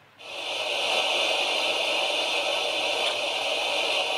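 A steady hiss that starts suddenly just after the beginning and holds even throughout.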